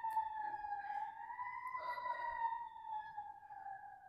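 Emergency-vehicle siren wailing: one long, slow tone that sinks gradually in pitch.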